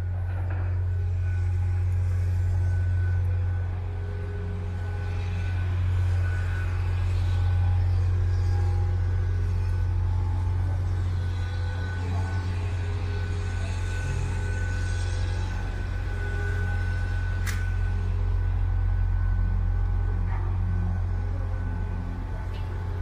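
Steady low rumble of idling road vehicles with a faint steady whine over it, and a single sharp click a little over three-quarters of the way through.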